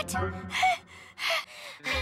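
A girl taking two deep, audible breaths in, each ending in a short falling voiced tone, over soft background music.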